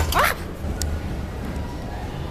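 A short cry of "Ah!" at the start, then quiet shop background with a single click about a second in, as a handheld camera is moved about.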